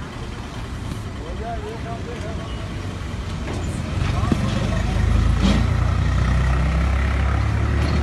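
A motor vehicle engine running steadily nearby, a low hum that grows louder about four to five seconds in, with faint voices of people around.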